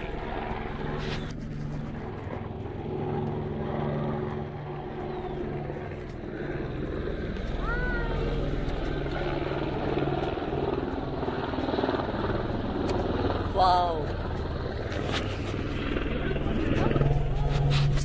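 Car engine running and tyres rolling over a rough dirt track, heard from inside the cabin with the sunroof open: a steady low drone with road rumble.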